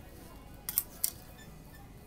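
Plastic clothes hangers clicking against a rail and each other: a couple of short sharp clicks a little under a second in and about a second in, over faint background music.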